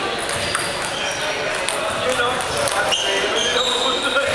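Echoing hall ambience of voices, with scattered light taps of table tennis balls bouncing at other tables.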